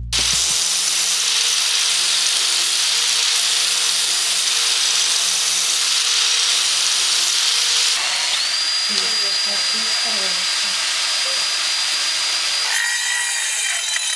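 Handheld power tool running steadily on metal parts during dismantling, a loud hissing grind. A steady high whine joins about eight seconds in, and the sound changes near the end.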